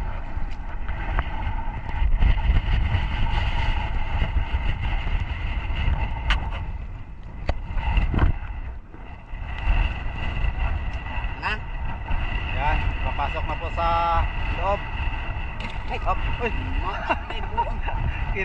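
Wind rumbling on the microphone over a steady distant engine hum, with people's voices rising in the background during the second half.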